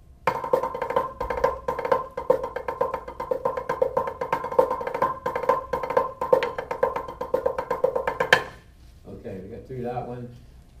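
Drumsticks playing a fast rudimental backsticking passage on a practice pad: a dense, even stream of crisp strokes with accents. It stops on a final loud stroke about eight seconds in.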